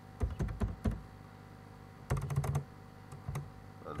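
Typing on a computer keyboard: irregular keystroke clicks in short runs, with a pause of about a second in the middle.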